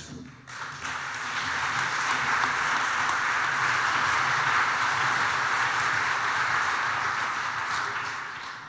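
Audience applauding, swelling over the first couple of seconds and fading out near the end.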